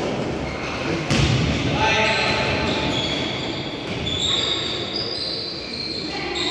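Basketball game on an indoor court: the ball thuds once about a second in, then players' sneakers give short, high squeaks on the gym floor, all with the echo of a large hall.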